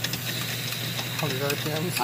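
Metal lathe running with a steady hum, spinning a steel snowblower drive shaft while a strip of abrasive cloth is held against it to polish it.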